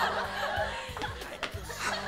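Sitcom laugh track: a crowd laughing over background music, the laughter dying down early on.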